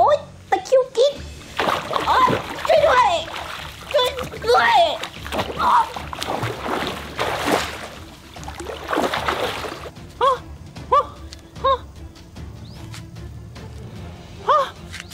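Water splashing as a child thrashes face-down in a swimming pool, with the child's voice crying out over the splashes. Near the end, short rising notes repeat about every half second.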